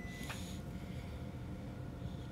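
Quiet, steady low background hum of room tone, with no distinct event.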